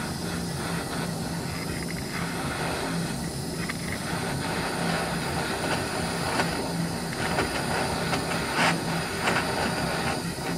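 Gas torch flame hissing steadily while it heats an aluminum joint for brazing with aluminum rod, with a few short crackles in the second half.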